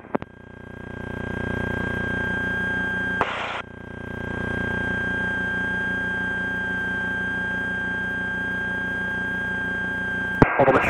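Slingsby T67 Firefly's piston engine heard from the cockpit, building up in power over the first second or so and then running steadily, as in a pre-takeoff engine run-up check. About three seconds in there is a short burst of hiss, after which the engine dips and builds back to a steady run. A steady high whine sounds throughout.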